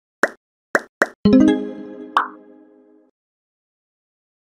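Animated logo sting: three quick pops, then a pitched musical chord that rings and fades out, with one more pop about two seconds in.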